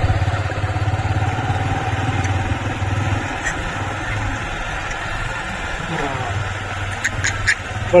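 A steady low engine hum, with a few short, sharp high-pitched sounds about seven seconds in.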